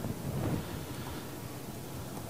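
Steady low background noise of a lecture room heard through the microphone: an even hiss and rumble with no distinct events.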